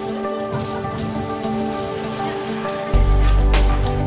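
Background music: held, steady tones over a hissing haze, with a loud bass line coming in about three seconds in.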